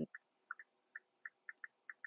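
Faint, short, high-pitched ticks, about nine in two seconds and irregularly spaced.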